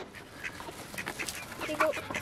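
Mallard ducks and ducklings calling at close range, a few faint short quacks scattered through the moment.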